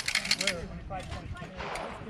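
A quick run of light clinking clicks in the first half second, then people talking in the background.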